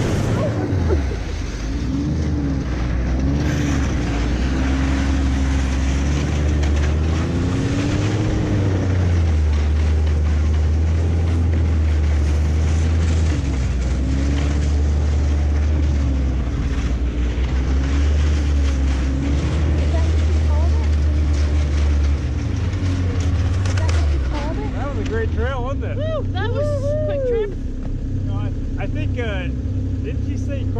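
Snowmobile engine running on a trail, its pitch rising and falling with the throttle. About 24 seconds in it drops back to a steady idle, and a few short revs that rise and fall follow near the end.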